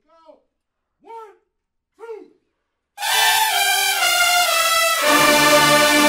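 A voice calls out a count-off in three short calls about a second apart, then a brass-heavy marching band of trumpets, mellophones and sousaphones comes in loud about three seconds in, its bass line stepping down. About five seconds in the band swells into a fuller, sustained sound.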